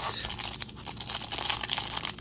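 Clear cellophane wrap on a stack of trading cards crinkling and crackling as it is worked at and torn open by hand, a dense run of fine crackles.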